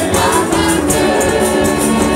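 Gospel praise singing: a woman and a man sing into microphones with a small choir behind them, over accompaniment with a steady high percussive beat of about four strokes a second.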